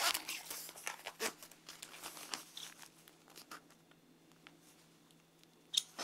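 Rustling and handling noise of a vest's fabric pocket and a battery pack being fitted, with scattered scrapes and clicks over the first few seconds. Then a quiet stretch, and one short sharp rustle near the end.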